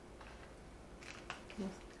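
A few light clicks of a knife on a wooden cutting board as cheddar cheese is sliced, about a second in, followed by a brief faint vocal sound.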